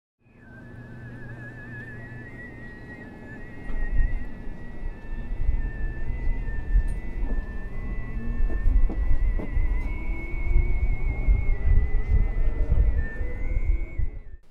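A man's overtone singing: a steady low vocal drone with a high, whistle-like overtone melody above it that wavers and jumps from pitch to pitch. A metro train's low rumble comes in loudly about four seconds in and runs under the singing.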